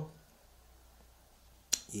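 Quiet room tone, broken once near the end by a single sharp click.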